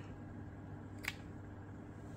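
A single short, sharp snip of scissors about a second in, trimming a tiny bit off an edge.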